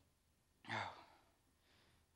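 A man's sigh into the microphone: a single breathy, voiced exhale about half a second long, followed by a fainter breath.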